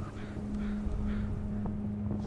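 Wind buffeting a wind-muffed microphone, heard as a low uneven rumble, under a steady low hum that fades out at the end.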